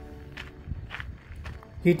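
Footsteps on a dirt trail, a few soft steps, over background music with held notes that fade out in the first second, and a low rumble of wind on the microphone; a voice starts speaking at the very end.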